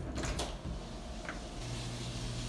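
A door being opened: faint clicks of the latch and handle, quiet compared with the knocking just before. A low steady hum starts about one and a half seconds in.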